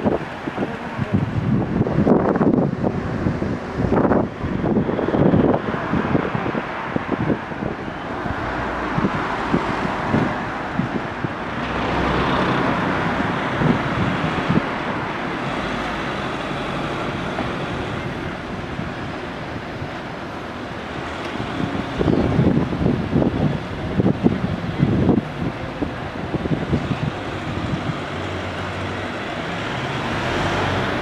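Outdoor street noise: a vehicle passes with a rising and fading rush in the middle. Wind buffets the microphone in gusts near the start and again later.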